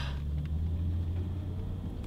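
Car engine and road rumble heard from inside the cabin while driving: a steady low drone, strongest for the first second and a half and then easing a little.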